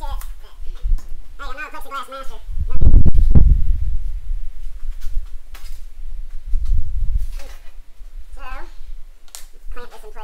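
A man's voice muttering in two short bits, with a loud low rumbling thump about three seconds in, a smaller low rumble later, and a sharp click near the end.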